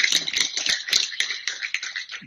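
Audience applauding, a dense patter of many hands clapping that thins out toward the end.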